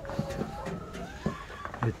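A huddled flock of hens giving soft, low calls, with a few light taps in between.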